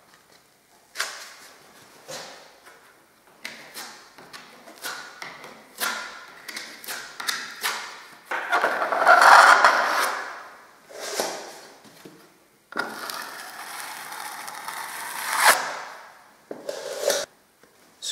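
A metal filling knife scraping filler along a joint, in a run of short strokes. Two longer, louder strokes come about halfway through and a little after two-thirds of the way.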